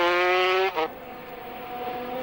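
250cc two-stroke racing motorcycle engine at full throttle: a loud, steady, high-pitched note that cuts off abruptly under a second in. A quieter, more distant bike engine follows and grows louder toward the end.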